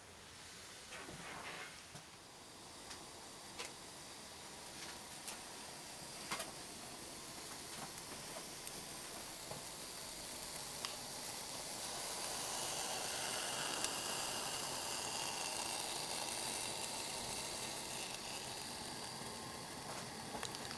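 Denatured-alcohol burners burning under water-filled mess tins in Swedish army stoves: a steady hiss that grows louder through the first two-thirds, with scattered light ticks.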